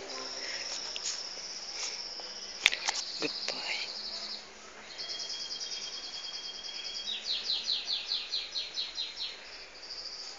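High-pitched animal chirping: a rapid buzzing trill for the first few seconds, then after a short gap a steady trill followed by a run of quick falling chirps, about five a second. A single sharp click comes about two and a half seconds in.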